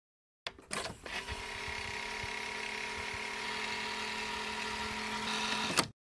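A small motor whirring steadily with a faint hum, starting with a few clicks about half a second in and stopping with a click near the end.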